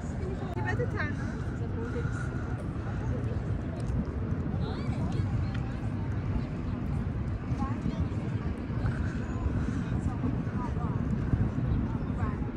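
Outdoor city ambience: a steady low rumble with faint voices of passers-by now and then.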